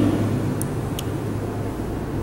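Steady low hum of room noise, with two brief high squeaks about half a second and a second in from a marker writing on a whiteboard.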